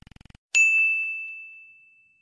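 Notification-bell 'ding' sound effect of a subscribe-button animation: a single bright chime struck about half a second in, ringing on one high tone and fading slowly over about two seconds. Just before it, a faint rapid rattle.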